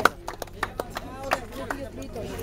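Scattered hand claps from a small crowd, sharp and irregular, with voices murmuring underneath.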